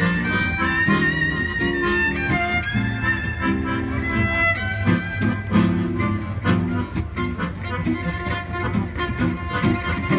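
Gypsy jazz trio playing live: violin carrying the melody over accordion and strummed archtop guitar. The first half holds long sustained high notes, and the playing turns choppier and more rhythmic toward the end.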